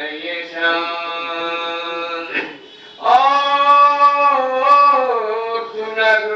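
A man's voice chanting soz, the Shia lament sung for Muharram, in long drawn-out phrases of held, slowly bending notes with no instruments. One phrase ends about two and a half seconds in, and a louder one starts about half a second later.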